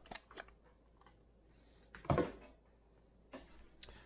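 Light clicks and knocks of metal beaters being handled and released from a switched-off electric hand mixer, with one louder knock about two seconds in.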